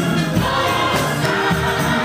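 Gospel choir and congregation singing together over a band, with hand claps on the beat.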